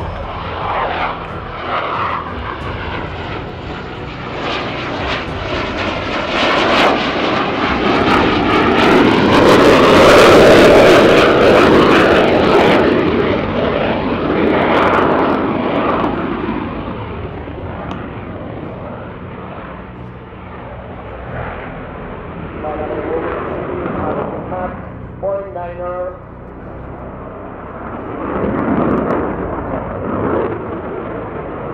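Spanish Air Force F/A-18 Hornet's twin General Electric F404 turbofan jet engines passing in a display flight. The roar swells to its loudest about ten seconds in, fades away, and then rises again near the end.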